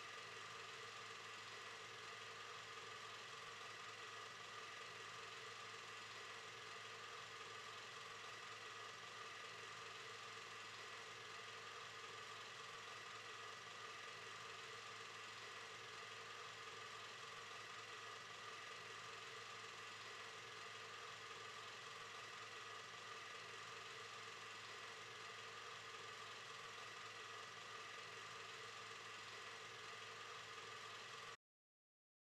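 A faint, steady hum that stays the same throughout, with no separate knocks or steps standing out.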